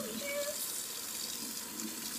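Kitchen faucet running steadily into a sink.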